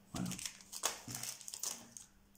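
Clear plastic bag crinkling as it is handled, in short irregular rustles.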